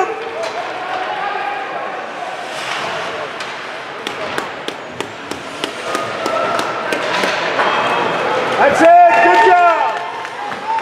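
Ice hockey game heard from the stands: a steady crowd murmur with a run of sharp clacks from sticks and puck on the ice and boards, then a loud shout near the end.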